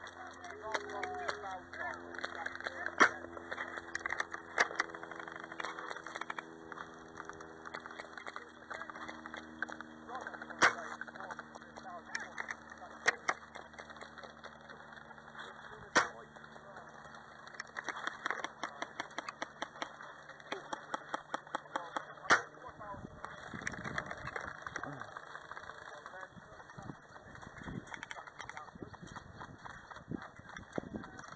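Airsoft guns firing out in the field: single sharp cracks a few seconds apart, about five in all, with a quicker run of lighter clicks a little past the middle.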